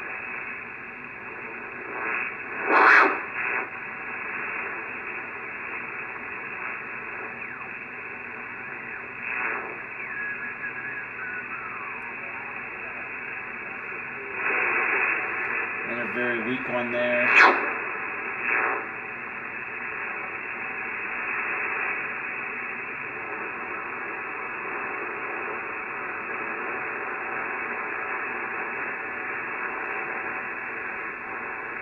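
Icom IC-7300 HF transceiver's receive audio through its speaker while the band is tuned: a steady, narrow band hiss with a faint voice coming through, a whistle gliding down in pitch, and two louder crackles, about 3 seconds in and about 17 seconds in.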